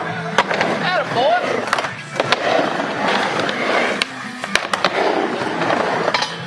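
Skateboard wheels rolling on a mini ramp, with several sharp clacks as the board and trucks hit the coping and deck.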